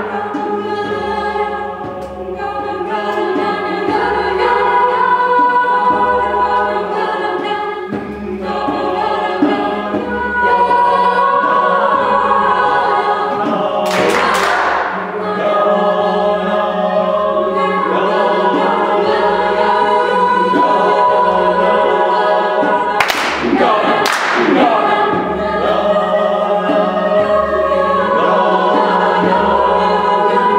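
A cappella choir of young women singing sustained, slowly shifting chords over a steady low held note. Sharp noisy accents come about fourteen seconds in and twice more around twenty-three seconds.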